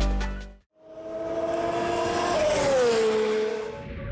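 Outro music fades out in the first half-second. Then a race car engine sound effect rises in, holds a steady pitch and drops in pitch as it sweeps past, like a car passing by.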